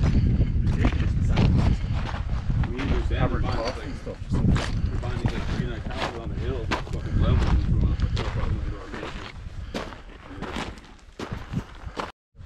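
Footsteps crunching over loose rock scree, with wind buffeting the microphone until it eases off about three-quarters of the way through.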